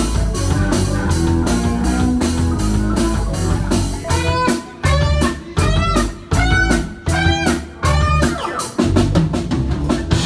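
Live rock band playing (electric guitars, bass, keyboard and drum kit) with no vocals: a steady groove, then from about four seconds in a run of about six sharp stop-start hits, each followed by a brief gap.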